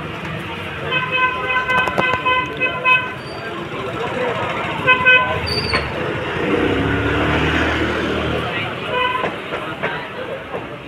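Vehicle horns honking in street traffic: a long honk of about two seconds, then short honks about halfway and near the end. Steady traffic noise runs underneath, and a passing vehicle's engine swells and fades in the second half.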